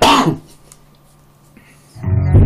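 A man's loud cough dies away within the first half second, followed by quiet room tone.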